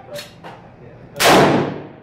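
A single revolver shot about a second in, a sharp, very loud report that rings on and dies away in the echo of an indoor firing range.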